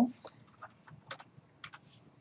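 Light, irregular clicking of a computer keyboard and mouse, a quick run of clicks with the loudest about a second in and again near the end.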